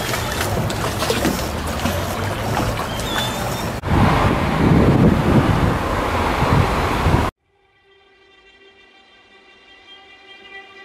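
Wind rumbling on the microphone over outdoor ambience by the river, with a cut to a similar noisy shot about four seconds in. Just past seven seconds the noise stops abruptly and a soft, sustained chord of background music slowly fades in.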